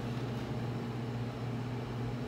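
A steady low hum with a faint even hiss under it: the room's background noise, unchanging throughout.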